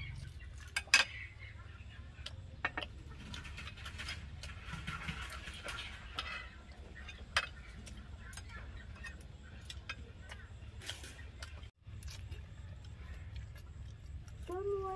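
Chopsticks, plates and drinking glasses clinking and tapping on a glass tabletop during a meal, scattered sharp clicks, the loudest about a second in, over a steady low background rumble.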